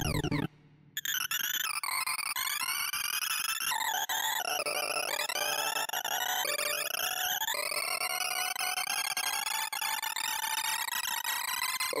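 ArrayV sorting-visualizer sonification: synthesized tones whose pitch follows the values of the bars being accessed. A quick falling sweep opens as the array is reset to reversed order, followed by a brief break. Then Weave Merge Sort runs on 2,048 reversed numbers with rapid jagged up-and-down sweeps, giving way to one long, steadily rising glide over the last four seconds or so.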